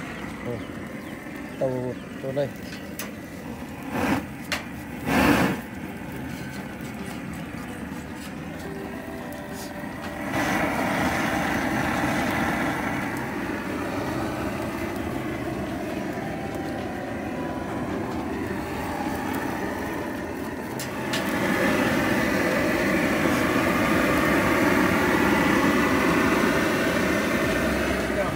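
Long-handled propane torch burning with a steady hissing rush as it singes the hair and skin of a wild hog carcass. The rush grows louder about ten seconds in and again about twenty seconds in, with a few short knocks in the first few seconds.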